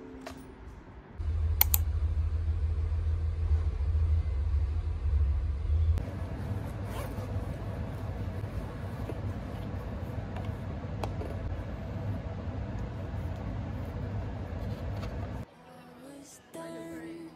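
Handling noise from a camera held close to the body: a low rumble for the first few seconds, then a cloth bag rustling and brushing against the microphone, with faint clicks over a steady room hum.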